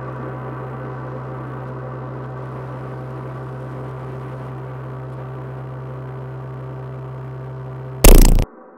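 A sustained, gong-like electronic drone: a steady low hum with a cluster of ringing overtones above it, holding an even level and fading only slightly.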